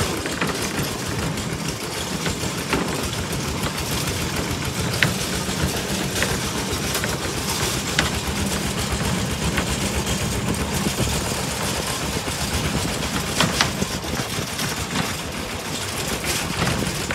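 A two-wheel walking tractor's single-cylinder diesel engine runs steadily while towing a loaded trailer over a rough dirt track. Sharp knocks and rattles come now and then from the trailer's metal frame, the loudest about five seconds in and again near thirteen seconds.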